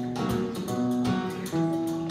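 Acoustic guitar strumming chords in a laid-back rhythm, with hand percussion played on a cardboard pizza box. The short strokes come about every half second over the ringing chords.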